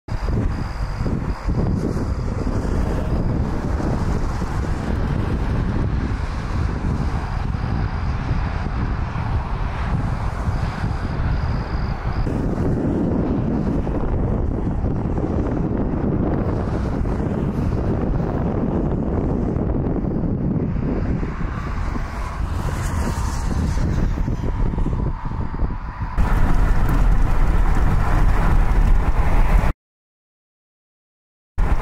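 Steady wind noise buffeting the microphone, with a swell of low rumble partway through. Near the end the wind noise gets louder and deeper, then cuts off suddenly.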